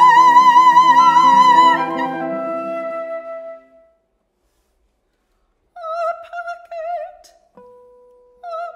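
Classical female voice singing a long, loud held high note with wide vibrato over short repeated chamber-ensemble notes; both fade out about three and a half seconds in. After about two seconds of silence she sings a quieter phrase, and a steady held instrumental note enters near the end.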